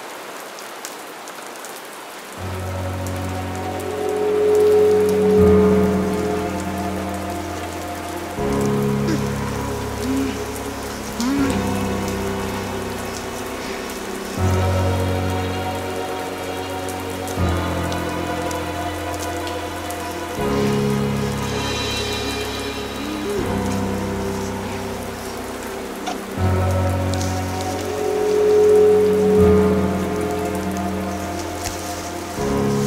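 Steady rain falling on pavement. About two seconds in, background music joins it with sustained chords that change about every three seconds and stay louder than the rain.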